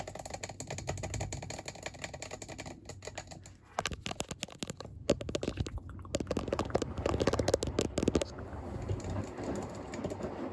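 Fingertips tapping and scratching right at the microphone in a dense run of quick clicks, growing louder about four seconds in, over the low steady hum of a running washing machine.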